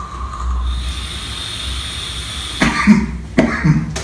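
A man coughing, about four short harsh coughs in the second half, after a dry hit from a vape dripper whose cotton burnt on one side.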